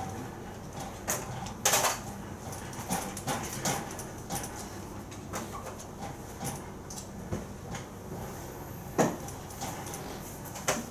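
Irregular small knocks and rustles of handling against a steady room background, the loudest about two seconds in and again near the end.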